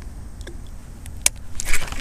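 Fishing rod and spinning reel during a cast and instant hookup: a faint tick, then one sharp click about a second in, and a brief hiss near the end, over a steady low rumble.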